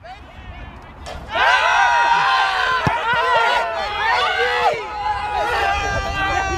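Several men shouting and cheering at once, overlapping voices that turn loud about a second in, with a single sharp knock near the middle.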